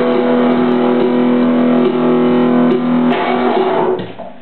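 Electric bass ringing out on held chords. The lower notes stop about three seconds in and the rest fades away at the very end.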